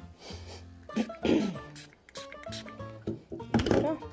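Background music with plucked strings, over which a small pump spray bottle gives two short hissing spritzes, about a second in and near the end, spraying alcohol into a silicone casting mould.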